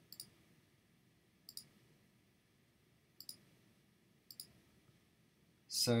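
Faint computer mouse clicks, four of them spaced about a second apart, each a quick press-and-release pair.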